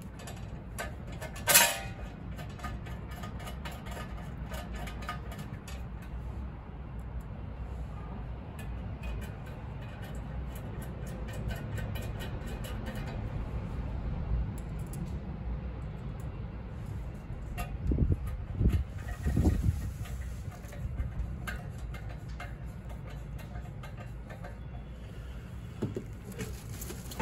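Screwdriver turning screws that fasten a stainless steel bracket to a scale column: scattered light metal clicks, with a sharper knock about a second and a half in, over a steady low rumble. A few louder low knocks come near the end.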